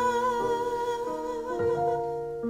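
A woman singing one long held note with a light vibrato, which ends about three-quarters of the way through, over sustained keyboard chords.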